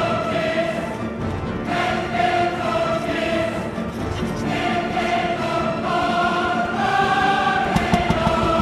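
Choral music: a choir singing long held chords that change every second or two.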